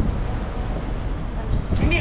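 Steady low rumble of outdoor background noise by a road, with a man's voice coming in near the end.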